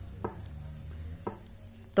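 Knitting needles clicking faintly as stitches are purled: two light clicks about a second apart over a low steady hum.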